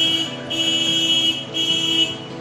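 A horn sounding three times in steady, loud blasts: a short one, a longer one of almost a second, then another short one.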